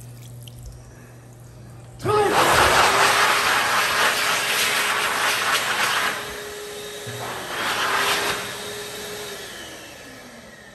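Xlerator high-speed hand dryer starting suddenly about two seconds in and blowing loudly with a steady motor whine; its loudness eases off, swells again, then it cuts out and the motor whine falls in pitch as it spins down near the end.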